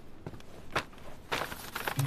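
Takeaway packaging being handled and opened: a few soft taps, then a burst of crinkly rustling about a second and a half in.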